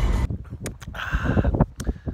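A low car rumble cuts off just after the start. Then a man sips gas station coffee from a paper cup, with a few small lip and cup clicks, and lets out a breathy sigh near the end.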